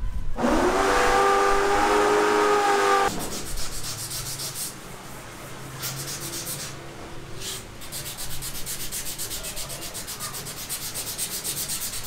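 A steady whine with several tones rises as it starts and runs for about three seconds, then stops. It is followed by fast, evenly repeated rubbing or scraping strokes on a hard surface, like hand sanding.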